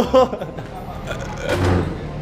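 Men's voices in conversation: a brief word at the start, then low background noise, with another short voiced or muffled sound shortly before the end.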